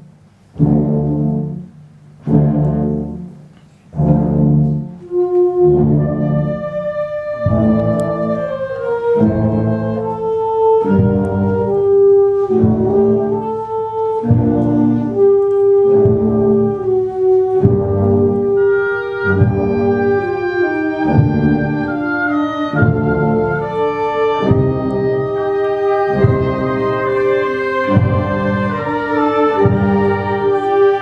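Concert wind band playing: three loud brass chords with short pauses between them in the first few seconds, then continuous music with long held notes under a moving melody.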